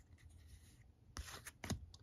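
Faint rubbing of card stock as a baseball trading card is slid off the front of a stack held in the hand, with a few light ticks in the second half as the card edges knock together.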